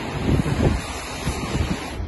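Wind buffeting the microphone outdoors, a low rumbling noise that rises and falls in uneven gusts.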